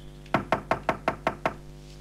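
A quick run of seven knocks on a door, evenly spaced at about five a second.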